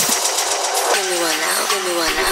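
Electronic dance music at a breakdown of a hard techno mix: the kick and bass have dropped out, leaving a high hiss, and from about a second in a short falling pitched phrase repeats about every 0.7 seconds.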